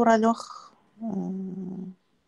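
A woman's voice: the tail of a spoken word, then about a second in a long, steady held hesitation sound, like a drawn-out 'mmm', which stops suddenly.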